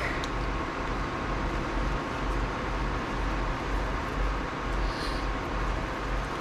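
Steady machine whir with a low hum and a faint constant high tone, unchanging throughout, with no distinct events.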